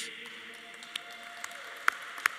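Light, scattered audience applause, with a sharp single hand clap near the end.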